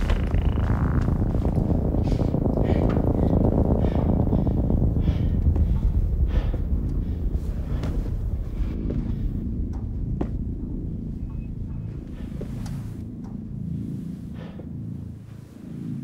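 Low, throbbing rumble of a horror film's sound-design drone, slowly fading away, with scattered faint clicks over it.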